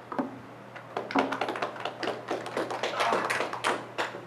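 A small audience clapping, a quick run of sharp handclaps that starts about a second in, thickens and dies away near the end.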